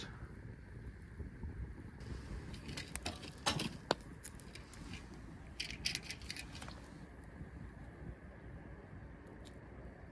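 Firewood burning in a mangal, crackling with scattered sharp pops and snaps over a low steady background.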